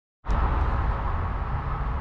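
A click as the recording starts, then a steady low rumble of outdoor background noise.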